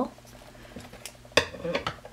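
Steel scissors snipping through a strand of bulky acrylic yarn: a few faint clicks of the blades, then one sharp snip about a second and a half in.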